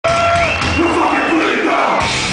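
Crowd at a hardcore concert cheering and shouting in a hall, loud and dense, with a few held shouts or tones standing out over it.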